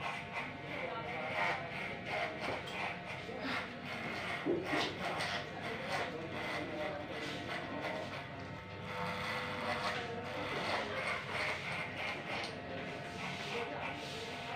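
Electric hair clipper fitted with a guard comb running and cutting hair on the side of the head: a steady motor hum with many small clicks as the blades bite through the hair.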